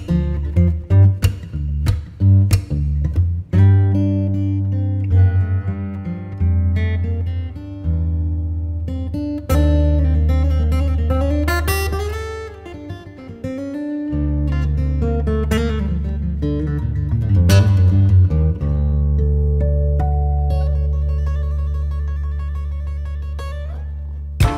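Background music led by acoustic guitar: sharp plucked and strummed chords at first, then held low notes with a melody moving above them.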